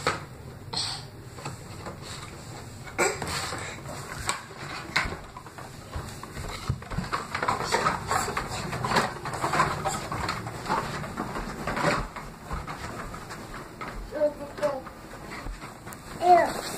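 Irregular knocks and rattles of a cardboard six-pack bottle carrier with a glass bottle inside, handled and carried by a toddler, mixed with footsteps on carpet. A short child's vocalisation comes near the end.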